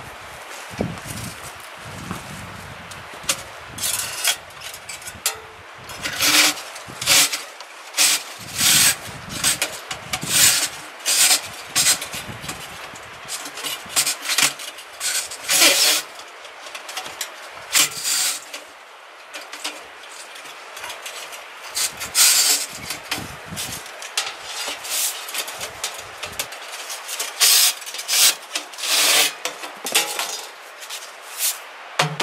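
A chimney brush scraped back and forth inside a section of metal stovepipe, sweeping out ash that an earlier burn has loosened. It goes in uneven strokes about once a second, with a short pause about two-thirds of the way through.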